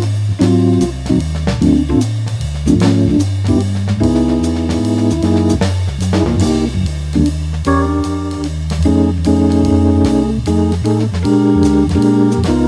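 Hammond organ and drum kit playing a jazz waltz blues: organ chords comping over a stepping organ bass line, with steady drum and cymbal strokes.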